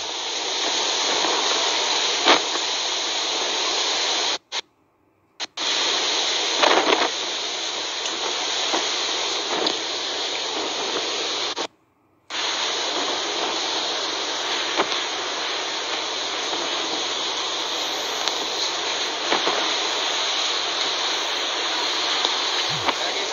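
Typhoon wind and driving rain: a steady, dense hiss. It cuts out completely twice, about four and a half and about twelve seconds in, for under a second each time, where the footage is edited.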